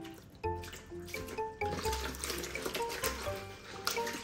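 Tap water running and splashing into a plastic basin in a stainless-steel sink as it is rinsed by hand, the splashing getting louder about halfway through, over background music.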